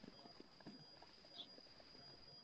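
Near silence: faint room tone with a steady high-pitched whine and a few faint clicks.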